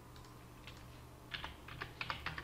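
Faint clicking of a computer keyboard and mouse: a couple of single clicks, then a quick run of several clicks in the second half.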